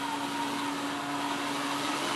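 Cordless drill running at a steady pitch, turning a coaxial cable-prep tool that strips the jacket and trims the outer conductor from the cable end. The tool is still cutting.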